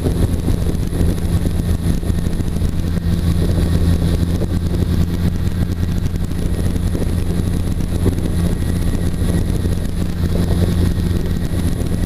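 Weight-shift trike's engine and pusher propeller running steadily in flight, a constant low hum with no change in power.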